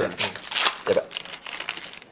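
Foil wrapper of a Pokémon card booster pack crinkling as it is handled and opened, a run of irregular rustles strongest in the first second and fading after.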